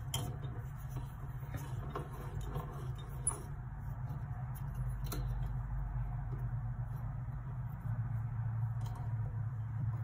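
Small plastic clicks and taps from a microphone spider shock mount being handled and fitted, frequent for the first few seconds and then only now and then, over a steady low hum.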